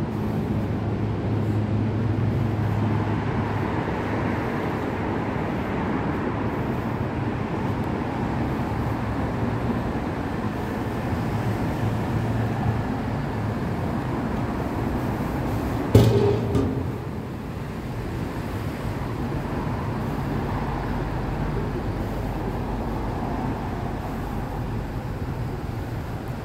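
Steady road-traffic noise from cars driving along a city street. A single sharp knock comes about sixteen seconds in, after which the traffic is a little quieter.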